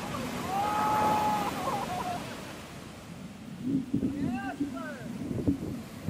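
Shorebreak waves crashing and washing up the sand, with a long held whoop of excitement about a second in and a few short whoops around four seconds in.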